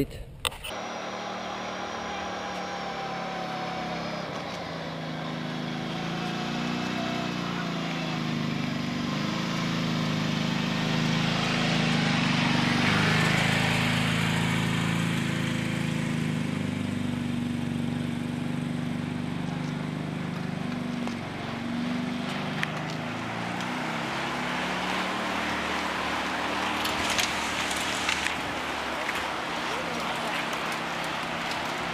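A large field of mountain bikes riding past at a race's mass start: tyre noise and riders' voices over a steady low hum. The sound builds to its loudest about halfway through and then eases off.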